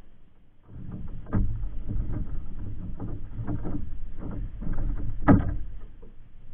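Irregular knocks and thumps on a bamboo platform deck over a low rumble as a large caught fish is laid down and handled. The loudest thump comes near the end.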